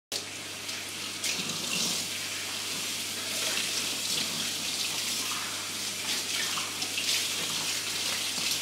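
Kitchen tap running steadily into a stainless steel sink while glasses are rinsed under the stream.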